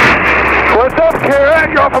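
Loud rushing engine and wind noise inside the cockpit of an Extra 330 aerobatic plane in flight, lasting under a second. Then a man's voice begins over it.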